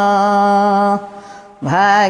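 A woman singing an Odia bhajan without accompaniment. She holds one long steady note for about a second, breaks off for a short breath, and starts a new phrase near the end.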